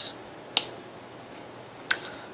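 Two short, sharp clicks about a second and a half apart over faint room tone.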